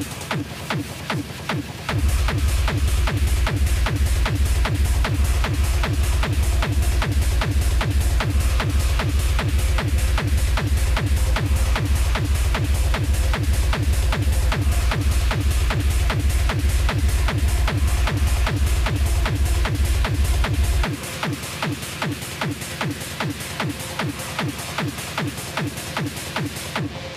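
Fast electronic dance music mixed live on CDJ decks, with a steady fast beat. A heavy bass kick comes in about two seconds in and drops out again a few seconds before the end.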